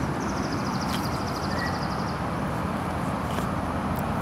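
Steady outdoor background rumble, with a faint, high, rapidly pulsing trill lasting about two seconds in the first half.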